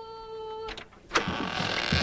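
A woman's drawn-out sung call of "hello", held on one pitch, ends under a second in. A sharp click follows just after a second in, then a rushing noise that grows louder.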